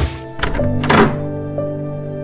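Three heavy thuds over steady background music: one sharp thud right at the start, then two more about half a second and a second in, the last with a short falling tone.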